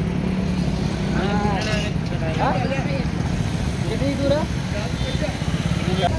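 Steady low drone of vehicle engines in street traffic, with faint voices talking over it.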